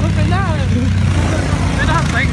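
Off-road vehicle engine running steadily, a low continuous drone with people's voices calling out over it.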